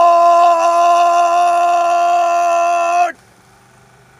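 A single loud, long horn-like note held perfectly steady in pitch, cutting off abruptly about three seconds in with a slight drop at the end.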